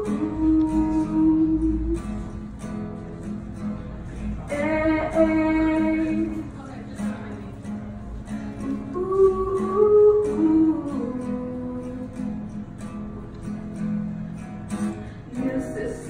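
Acoustic guitar strummed as a song's opening, with a woman singing long, wordless held notes over it in three phrases.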